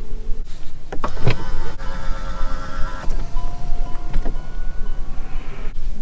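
Electric seat-adjustment motor of a Zeekr 009 rear seat whining in two runs of about two seconds each, the second lower in pitch, with clicks as the switches are pressed, over a steady low hum.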